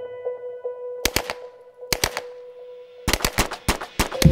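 A steady pitched tone held throughout, cut by sharp cracks: two quick pairs about a second apart, then a rapid run of them in the last second, like gunfire.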